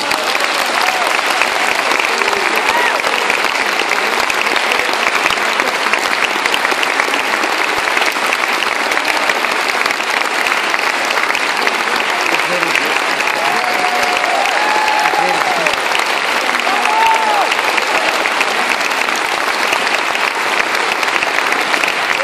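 Audience applauding steadily and loudly in a concert hall.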